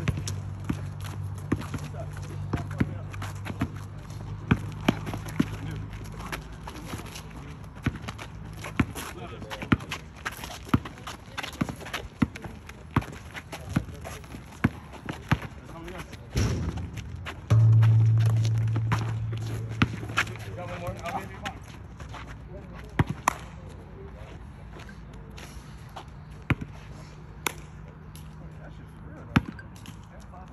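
Basketball bouncing on an outdoor asphalt court during a pickup game: irregular sharp thuds from dribbles and shots, with players' voices in the distance. A steady low hum runs underneath and swells loudly for a few seconds past the middle.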